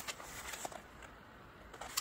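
Faint handling noise: a few soft rustles and small clicks as a banded skein of acrylic yarn is turned in the hands.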